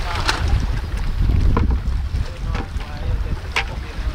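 Wind buffeting the microphone, a steady low rumble, with a few short sharp sounds about a second and a half apart.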